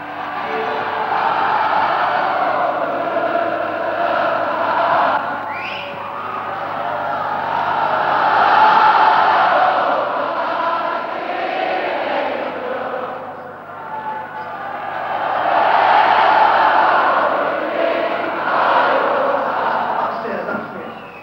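Large concert crowd cheering and chanting, the roar swelling and falling in two long waves. A short rising whistle sounds about five seconds in.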